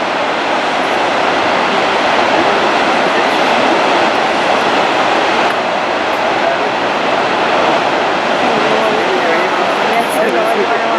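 Steady rushing of water churned up by a fallen wall of glacier ice, with waves washing over the rocky shore and floating ice pieces.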